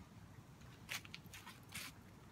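Great Dane puppy chewing a treat: a few short, faint crunches about a second in and near the end.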